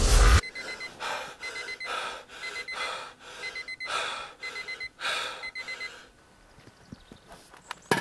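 Small alarm clock beeping in quick groups of short high beeps about once a second, over heavy gasping breaths. The beeping stops about six seconds in, and a single sharp click comes near the end.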